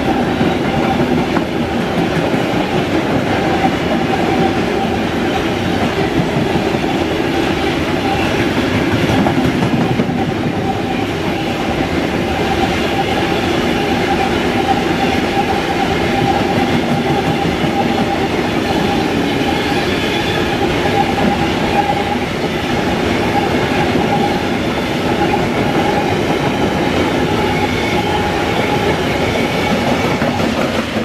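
Freight train of high-sided bogie hopper wagons rolling steadily past close by: a continuous rumble and rattle of wheels on rail, with a steady whine running through it.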